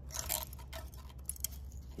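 Light, irregular metallic clicks and ticks of a feeler gauge's steel blades being handled and tried between the cams and the exhaust valve buckets of a motorcycle cylinder head, where the clearance is too tight.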